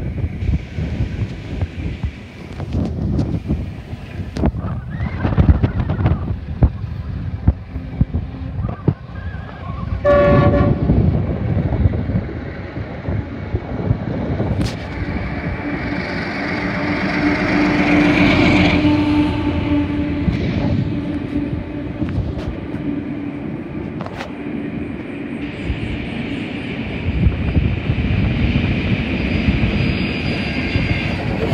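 Diesel freight locomotive (GL class) giving a short horn blast about ten seconds in, then its engine rumble building as it approaches and passes beneath, loudest a little past halfway, with the train running on steadily behind it.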